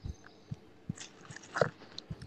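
Faint, scattered short clicks and small knocks close to a microphone, with a brief slightly louder one about one and a half seconds in.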